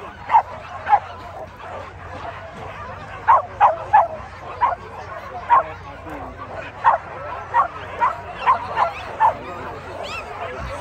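Hunting dog yelping: about fifteen short, high, falling yelps over ten seconds, coming irregularly and sometimes in quick pairs.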